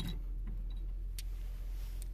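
A few light clicks over a low steady hum, the sharpest click about a second in.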